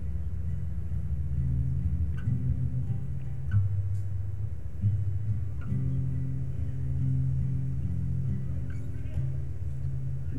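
Solo steel-string acoustic guitar playing an instrumental passage, with low notes ringing and sustained under lighter plucked notes.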